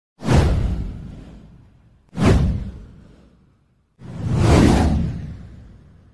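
Three whoosh sound effects of an intro title sting: two that hit suddenly about two seconds apart and fade away, then a third that swells up and fades out near the end.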